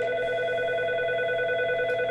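IP desk phone sounding a steady electronic call tone, several pitches held together without change, as a busy-lamp-field key speed-dials another extension. The tone holds for about two and a half seconds and stops shortly after.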